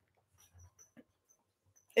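Near silence, with a few faint, short high squeaks and a soft tick about a second in.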